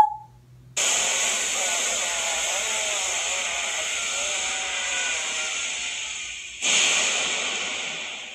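Anime blast sound effect: a loud rushing roar cuts in suddenly about a second in and holds steady, then a second surge hits near the end and fades away.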